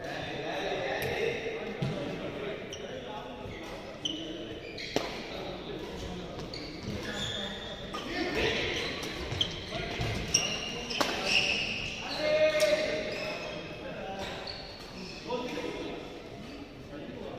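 Badminton rally in an echoing indoor hall: several sharp racket strikes on the shuttlecock, with sneaker squeaks and footfalls on the court and voices in the background.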